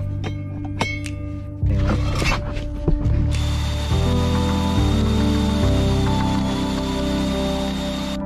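Background music with slowly changing bass notes over a mains SDS drill boring a core bit into a stone wall. After a few scattered clicks, a steady rush with a thin whine from the drill comes in about three seconds in.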